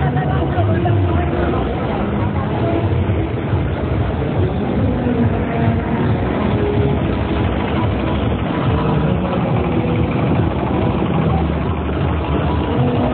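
Loud, steady street-procession noise: a vehicle engine running low under a babble of crowd voices.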